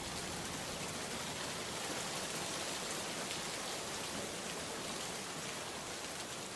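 A steady, even hiss of background noise with no speech or music, in the manner of a rain ambience.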